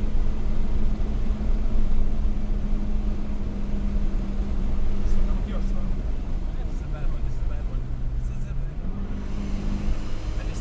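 Car engine and road noise heard from inside the cabin while driving on a race track: a steady engine drone over a constant rumble. The engine note drops lower about seven seconds in and comes back up near the end.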